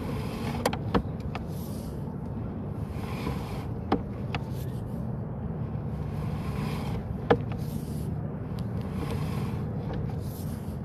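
Sewer inspection camera's push cable being pulled back through a clay pipe: a steady low rumble with a few sharp clicks, the loudest near the start, about four seconds in and past seven seconds.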